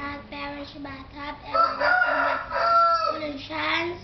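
A rooster crows once, about a second and a half in, in a long raspy call that drops slightly at the end; it is the loudest sound here, over a child's quieter voice.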